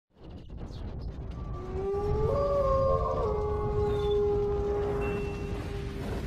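Intro sound effect: several long, overlapping howl-like tones that glide up slightly about a second and a half in and then hold, over a low rumble.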